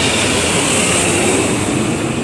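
A loud, steady rushing noise that swells slightly and then eases, with no distinct strokes or tones.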